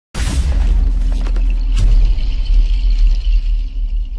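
Cinematic intro sting: a heavy deep bass rumble with a hissing whoosh at the start and a few sharp glitch-like hits partway through.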